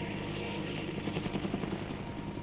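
Helicopter flying overhead, its engine and rotor running steadily.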